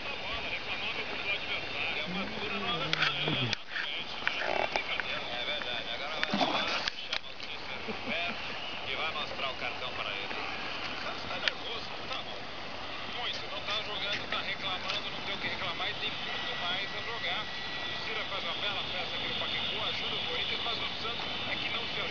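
Steady outdoor background with a constant high-pitched chirring, faint voices and a few brief knocks.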